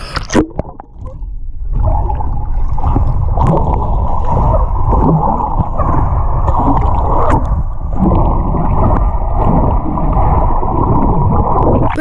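Underwater sound heard through the camera: a splash as it goes under about a second and a half in, then a continuous, muffled rush and bubbling of water as the swimmer kicks through the pool with fins on.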